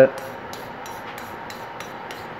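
Hand wire brush for steel scrubbing the end of a square steel tube in quick back-and-forth strokes, about five a second. It is cleaning dirt and grease off the metal before welding.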